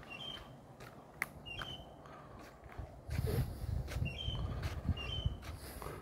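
Short high chirps repeated about once a second, like a small bird calling. A low rumbling joins from about halfway through.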